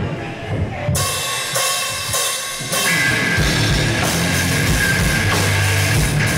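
Live band with distorted electric guitars, bass guitar and a Tama drum kit starting a song. Drums and cymbals open it, and the full band comes in louder about three seconds in, with a sustained high guitar note over it.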